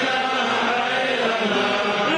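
A crowd of many voices chanting together, a continuous religious chant held and drawn out without pause.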